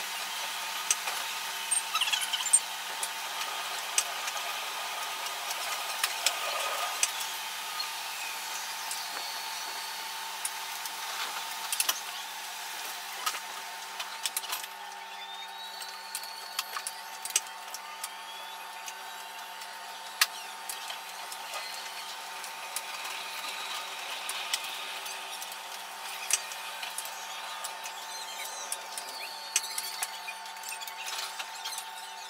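Oslo metro train running along the track: a steady mechanical hum with a few held tones, broken by a stream of sharp clicks and knocks from the wheels on the rails.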